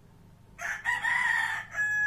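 A loud, long-drawn bird call that begins about half a second in and is held in two long parts, the second at a steadier pitch.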